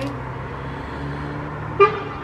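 Road traffic: a vehicle's engine running steadily, then a short, loud vehicle-horn toot near the end.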